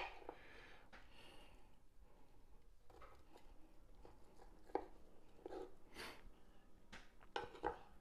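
Faint knife-cutting sounds as a rack of smoked pork ribs is sliced on a wooden cutting board: a few short, soft clicks and knocks over quiet room tone, most of them in the second half.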